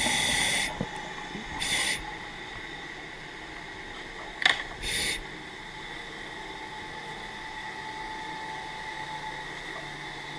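Underwater scuba gear releasing air in three short hissing bursts, one near the start, one around two seconds in and one around five seconds in. A sharp click comes just before the last burst, over a faint steady hum.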